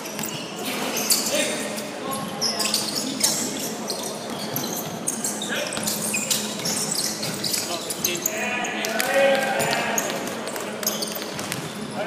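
Basketball being dribbled and bounced on a hardwood gym floor, with sneakers squeaking in short high-pitched chirps and players calling out, all echoing in a large hall.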